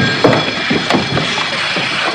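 Dramatic film score over a fistfight, with a couple of sharp knocks of blows or furniture being struck, one about a quarter second in and one about a second in.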